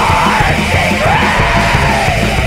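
Extreme metal song: a loud, dense wall of distorted instruments and drums under a harsh yelled vocal that slides up and down in pitch.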